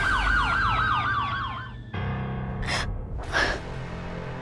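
A police siren yelping rapidly up and down, about six cycles a second, its pitch sliding slowly downward, over a low music drone; it cuts off suddenly about two seconds in. Two short breathy bursts follow near the end.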